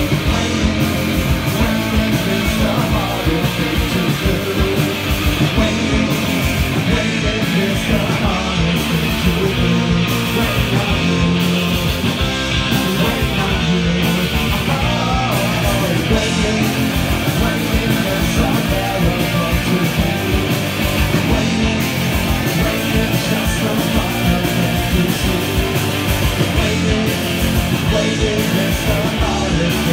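Punk rock band playing live: electric guitars, electric bass and drum kit together, loud and steady throughout.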